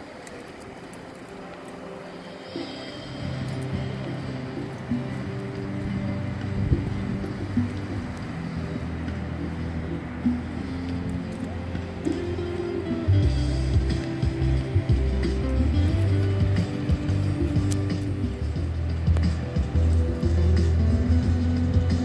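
Background music with held bass notes that comes in about three seconds in and becomes louder and fuller about halfway through.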